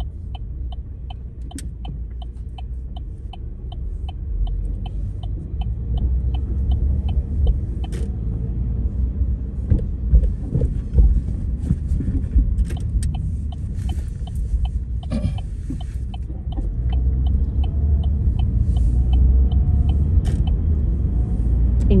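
Car cabin rumble of engine and tyres on the road, getting louder about three-quarters of the way in as the car picks up speed. For the first seven seconds or so a turn signal ticks steadily, about three clicks a second, as the car turns right.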